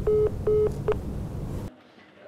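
Telephone busy-signal tone: short, evenly spaced beeps of one pitch, about two and a half a second, ending about a second in, which signal a call that is not getting through. Under them runs a low drone that cuts off near the end.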